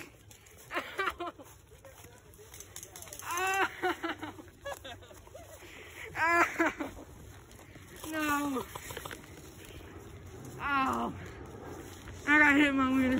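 Human voices calling out in short bursts about five times, with footsteps crunching through dry leaf litter in between.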